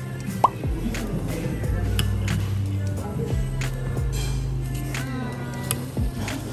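Background music with a steady beat and sustained bass notes. A short rising pop about half a second in is the loudest moment.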